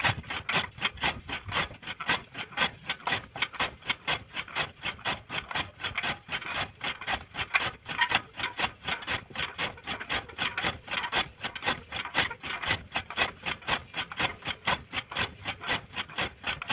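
Hand-cranked chaff cutter chopping green fodder as its flywheel is turned, making a fast, even clatter of chopping strokes, about four to five a second.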